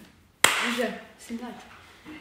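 A single sharp hand clap about half a second in, followed by a woman talking.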